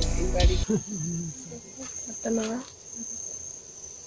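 A steady, high-pitched insect drone, with background music with a heavy beat cutting off about half a second in and two brief bits of voice.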